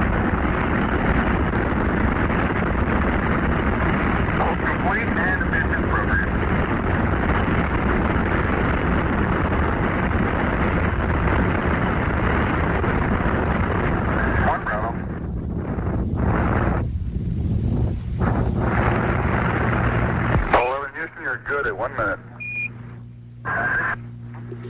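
Saturn V rocket's first-stage engines at the Apollo 11 liftoff: a loud, steady rumble heard through a narrow, radio-like archival broadcast recording. Near the end it breaks up and thins out, then stops abruptly, leaving a low hum and faint voices.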